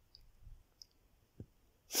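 A pause between spoken phrases holding only a few faint mouth clicks, about three, spread across it; the voice comes back right at the end.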